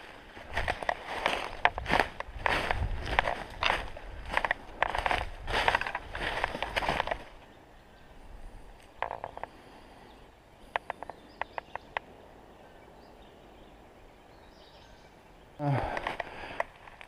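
Footsteps crunching through dry fallen leaves, about two steps a second for the first seven seconds, then stopping. After that only a few light crackles of leaves and twigs over quiet outdoor background.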